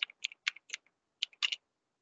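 Computer keyboard being typed on: a run of quick, irregular key clicks with a short pause about halfway through.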